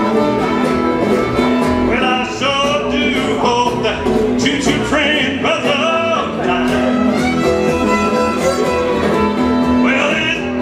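Live acoustic string band playing an instrumental break. A fiddle takes the lead from about two seconds in with sliding bowed phrases, over strummed acoustic guitar and upright bass.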